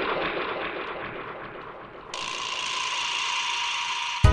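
A rattling, ratchet-like mechanical sound effect in a break in the beat. About halfway through it abruptly becomes brighter and louder.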